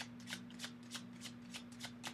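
A tarot deck being shuffled by hand: a quick, irregular run of soft card clicks, about five a second.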